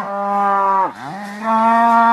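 Cow mooing in long, steady calls. One moo drops in pitch and breaks off a little before the middle, then the voice rises into another moo held at a steady pitch.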